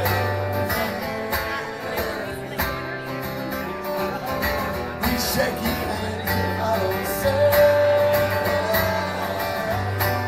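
Live rock band: a man singing with strummed acoustic guitar, over bass and drums.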